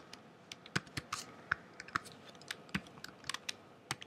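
Computer keyboard being typed on: irregular, separate keystrokes, a dozen or more, with a quick cluster near the end.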